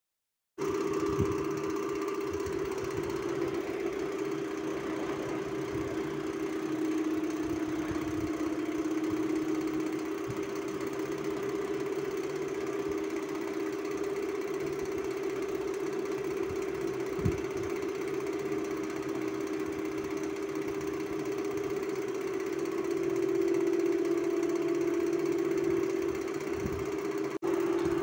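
A motor running with a steady, pitched hum, starting about half a second in and briefly dropping out just before the end.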